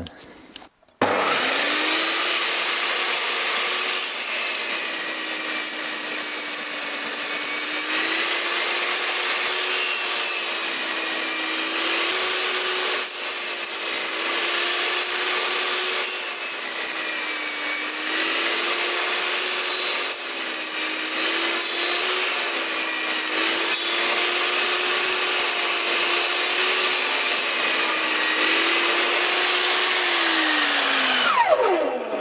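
Vevor 1800 W table saw starting up about a second in and running on, its blade tilted to its steepest angle and cutting a wooden pole to a point. The motor's pitch sags and recovers repeatedly as the blade bites into the wood with each pass.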